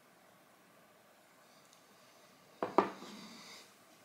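A whisky tasting glass set down on a hard surface after a sip: two quick knocks, the second louder, followed by a brief glassy ring that dies away.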